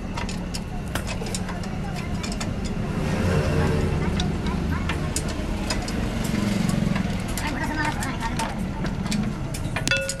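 Scattered sharp metal clinks and taps of tools on a truck's rear axle hub and brake drum, over a steady low rumble of passing traffic and background voices.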